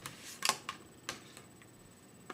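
Several light clicks and taps from handling makeup products, such as eyeshadow containers and a brush. The loudest click comes about half a second in, followed by a few fainter ones.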